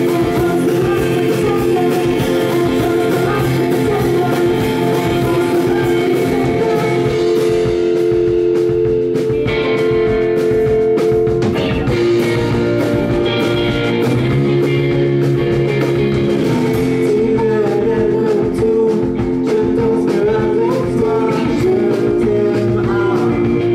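Live rock band playing: two electric guitars over a drum kit, with singing.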